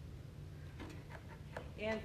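Room tone with a steady low hum and a few faint, brief soft sounds about a second in, then a woman's voice begins near the end.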